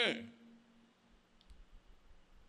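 A man's voice finishes a sentence, falling in pitch as it trails off. A quiet pause of faint room tone follows, with a single faint click about a second and a half in.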